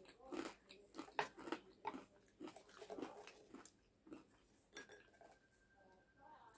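Quiet eating sounds: chewing and mouth smacks, with a wooden spoon and fork clicking and scraping against a plate of penne alfredo. A string of short, soft clicks that thins out toward the end.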